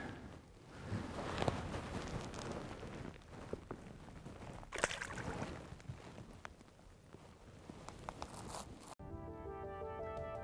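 Water splashing and handling noise as a walleye is released back into the lake, with a louder splash about five seconds in. Background music cuts in suddenly near the end.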